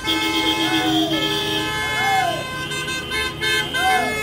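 Many car horns honking at once in long, overlapping blasts of different pitches from a slow line of passing cars.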